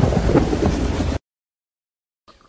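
A loud, rumbling, thunder-like sound effect accompanies the show's title card. It cuts off abruptly a little over a second in.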